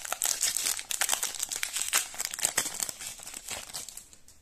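Foil wrapper of a trading-card pack crinkling and tearing as it is pulled open by hand, a dense crackle that thins out over the last second or so.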